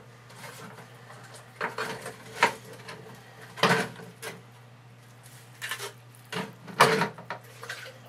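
Scattered knocks, scrapes and rustles as dirty filter pads are pulled from a plastic hang-on-back aquarium filter and handled, over a steady low hum.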